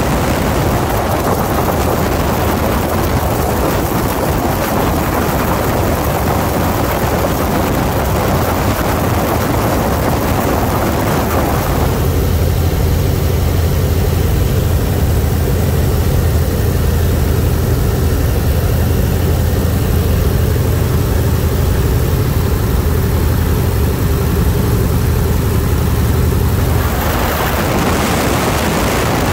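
Open-cockpit biplane in flight: a 1940 Waco UPF-7's seven-cylinder radial engine and propeller droning steadily under loud wind rush. About twelve seconds in, the sound turns to a deeper, steadier engine hum with less wind hiss. Near the end the wind rush returns.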